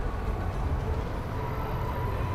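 A road-train shuttle tram, a tractor unit pulling passenger carriages, passing close by: a steady low rumble with a faint thin tone above it that grows a little near the end.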